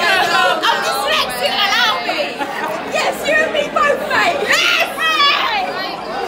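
Excited chatter of several women's voices talking and calling out over one another, with no single voice clear, in a busy, echoing bar.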